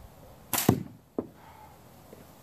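A slingshot shot with half-inch steel ammo: a sharp snap of the release about half a second in, then right after it a loud thud as the ball reaches the barrel catch box, and a single short sharp knock about half a second later.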